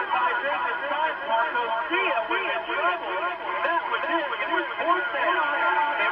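Indistinct, muffled male speech: overlapping talk with no clear words.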